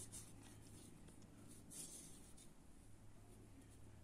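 Near silence: faint, soft rustling of a steel crochet hook drawing thin polyester thread through stitches, over a low steady hum.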